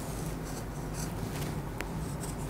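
Whiteboard marker drawing lines on a whiteboard, squeaking in a few short high bursts about halfway through, with a light click near the end.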